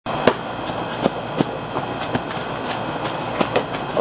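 Padded boffer swords striking each other in a sparring exchange: a run of sharp knocks, about three a second, over a steady background hiss.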